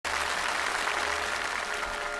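Audience applauding, with the first sustained notes of a song's instrumental introduction faintly underneath.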